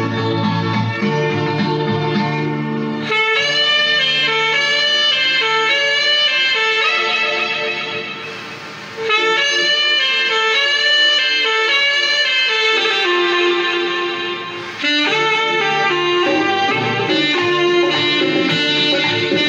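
Saxophone playing a song's melody in phrases over a recorded backing track. The backing plays alone at first and the saxophone comes in about three seconds in, pausing briefly between phrases.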